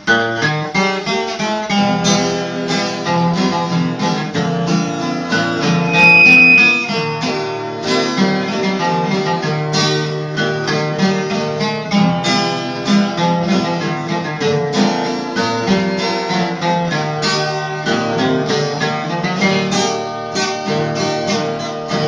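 Two acoustic guitars (violas) playing the instrumental introduction of a sertanejo modão, a picked melody over strummed chords. A brief high steady tone sounds about six seconds in.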